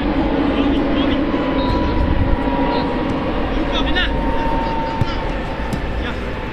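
Steady outdoor background rumble with faint distant voices and a few short high chirps.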